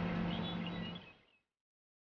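Background score of low strings fading out about a second in, then dead silence.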